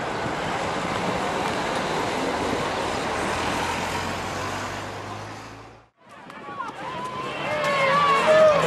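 Roadside street noise with a motor vehicle's engine humming steadily, fading out about six seconds in. After a brief gap, a crowd's voices and shouts start up and grow louder near the end.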